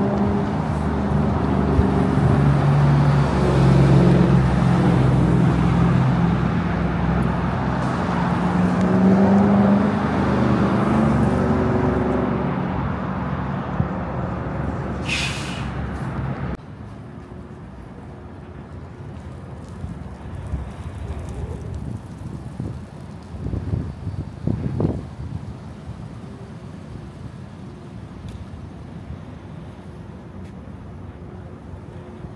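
A city bus's diesel engine runs loudly, its pitch shifting, with a short air-brake hiss about fifteen seconds in. Past the halfway point the sound drops suddenly to quieter street traffic noise, with a few faint knocks.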